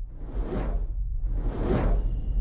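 Two whoosh sound effects, one about half a second in and one near the end, swelling and fading over a deep steady rumble: the opening of an animated logo sting.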